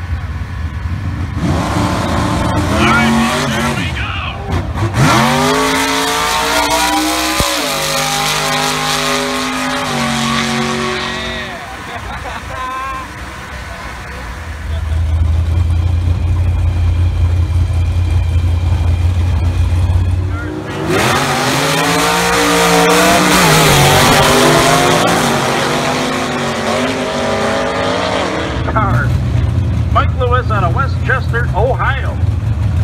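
Vintage gasser drag cars' engines revving hard and pulling away down the strip, the pitch rising and falling through the run. This happens twice, with a steady low engine idle between the two runs.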